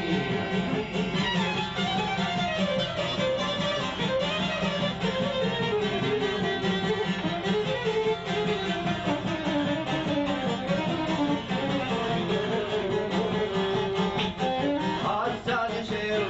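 Instrumental break of a folk song: a wandering lead melody over a steady strummed-guitar accompaniment.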